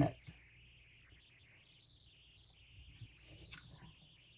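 Mostly very quiet, with a faint steady high-pitched background; in the last second or so, faint rustling and light knocks as a paper-wrapped cardboard box is picked up and turned over on a quilted fabric cover.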